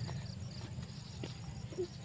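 Light footsteps running on a dirt path, a few soft knocks over a steady low rumble.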